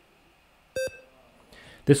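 A race check-in app on a smartphone giving one short beep as its camera reads a QR code, the sign of a successful scan.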